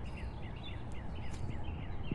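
Small birds chirping, a quick run of short, repeated chirps several times a second, over a low steady rumble.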